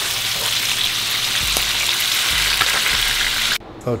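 Bacon sizzling steadily in a frying pan, with a few light clicks as the strips are turned. The sizzle cuts off suddenly near the end.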